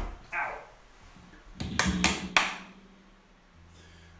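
Handling noise from a semi-hollow electric guitar: a few sharp knocks and taps around the middle, after which a low note is left ringing faintly.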